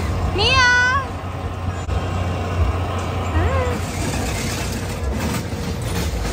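A young child's high-pitched voice calling out twice: a long rising-and-falling call in the first second and a shorter one about three seconds in, over a steady low hum.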